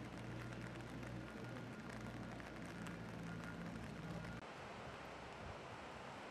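Faint construction-site background: a steady low machinery hum under a hiss. About four and a half seconds in the hum drops away at a cut, leaving mostly hiss.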